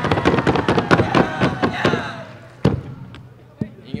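Audience clapping and cheering in a quick patter, dying away about two seconds in, then a few sharp knocks.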